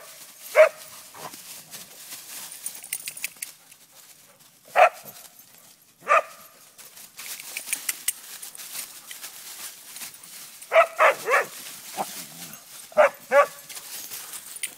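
Dog barking in short, sharp barks: single barks a few seconds apart, then a quick run of three, and two more near the end.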